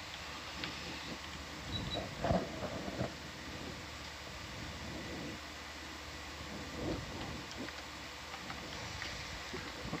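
Steady hiss and low hum of the ROV control room's audio feed, with a few faint, indistinct knocks and murmurs about two to three seconds in and again near seven seconds.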